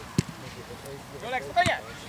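A football kicked once with a sharp thud about a fifth of a second in, followed by a couple of brief distant shouts from the pitch.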